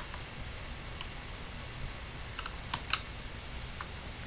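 Small Phillips screwdriver working the tiny screws out of an Acer Aspire One netbook's plastic underside: a handful of light, scattered clicks over a faint steady background.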